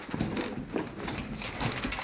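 Handling noise from a handheld camcorder being swung and carried quickly across a room: irregular low rumbling with faint knocks and rustles.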